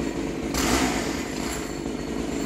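Gas-powered pole saw's small engine running steadily, with a rush of noise that swells about half a second in and fades over about a second as the saw works in the branches.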